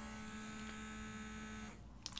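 Handheld blackhead vacuum's small electric motor running with a steady hum, then switched off near the end.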